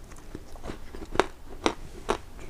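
A person biting into and chewing a crisp, crumbly almond butter cookie. Small crunches run through it, with two sharper crunches in the second half.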